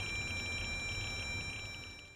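Raysid radiation detector sounding a steady high-pitched electronic alarm tone over a hiss, with its readout overloaded by a lutetium-177 vial at over 760 µSv/h. The sound fades out at the end.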